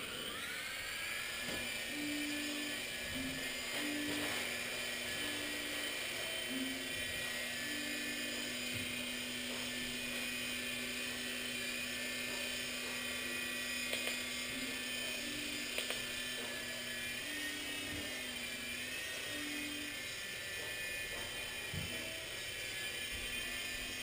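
Blade mCX micro coaxial helicopter's small electric motors and rotors whining: they spin up in the first second, then hold a steady pitch with a slight wavering later on.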